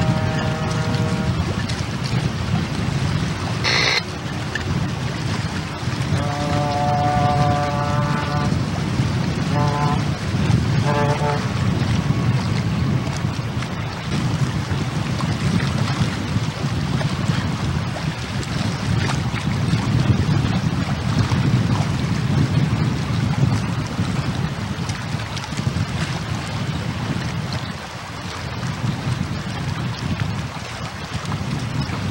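Strong wind buffeting a camcorder microphone over choppy water, a steady rumble throughout. A few steady pitched tones cut through it: one long tone about six seconds in, then two short ones.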